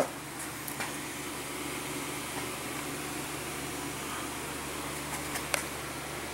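Steady low mechanical hum with a faint hiss, broken by a couple of faint clicks about a second in and near the end.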